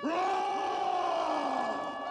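A man's long roaring yell, its pitch sinking slowly as it fades.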